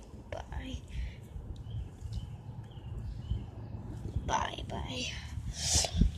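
Soft whispering with a steady low rumble underneath. A hand scuffs lightly in loose soil, pushing dirt over a small buried toy.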